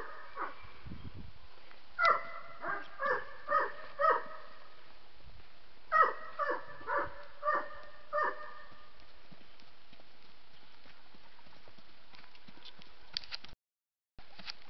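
A dog barking in two runs of about five short barks each, a couple of seconds apart, over the faint hoof steps of a Paso Fino horse on a dirt track.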